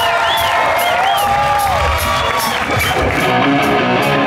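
Live electric rock guitar playing bent notes with a wide, wavering vibrato, then the band settling into a steady beat about three seconds in as the song starts.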